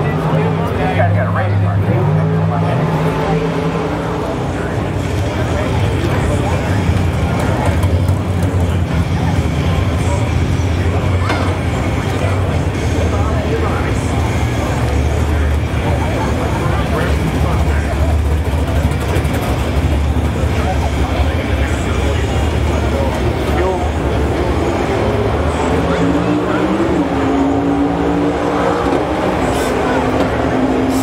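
An engine running steadily with a low drone under the chatter of a crowd, its pitch rising briefly near the end.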